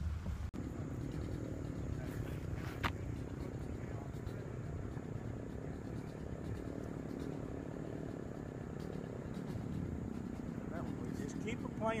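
Outdoor ambience: a steady low background rumble with a faint high steady hum over it, and a single light click about three seconds in.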